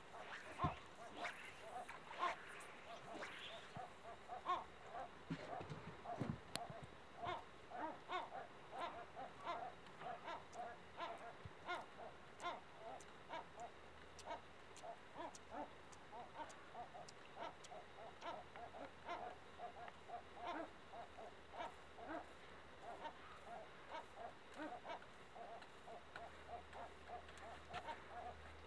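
A flock of seagulls calling without pause: many short calls overlap, several a second.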